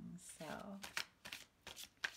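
Tarot cards being shuffled and handled by hand. After a short word, a few short, crisp card snaps come in the second half.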